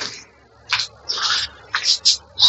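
Several short rustling, rubbing noises from handling, spread through the two seconds, over a faint low hum.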